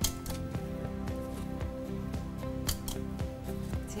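Background music, with a handful of sharp, light clicks from playing cards being flipped over and dropped onto a pile on a tabletop.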